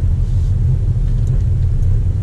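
Manual pickup truck driving at road speed, heard inside the cab: a steady low rumble of engine and road noise.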